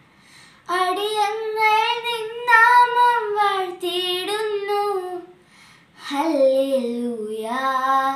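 A girl singing a Malayalam Christmas carol solo and unaccompanied, with vibrato on the held notes. Two sung phrases, the second starting about six seconds in after a short pause for breath.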